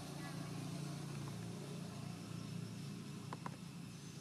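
Low, steady engine hum of a vehicle running off-camera, with two faint short clicks about three and a half seconds in.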